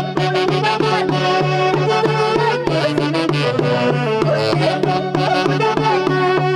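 A live dance band of saxophones and percussion playing an upbeat tune over a steady bass beat, amplified through a PA speaker.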